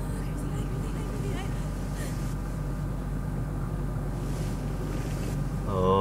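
A steady low rumbling noise with a faint steady hum under it.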